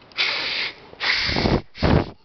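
Air blown by mouth through the small spray nozzle of a hand-pump garden sprayer: three puffs of breath, the last one short. This is a check of whether the nozzle's spray hole is clogged.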